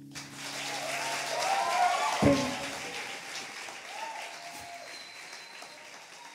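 Audience applauding and whooping as a live song ends. The last held chord of the song fades out under the first second and a half. The clapping swells to a peak about two seconds in, with a single low thump, then thins out.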